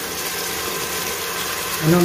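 Canned red kidney beans and their liquid pouring from the tin into a stainless steel pot, a steady splashing pour.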